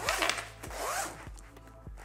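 Zipper on a fabric laptop sleeve's pocket being pulled shut, in short strokes mostly in the first second or so.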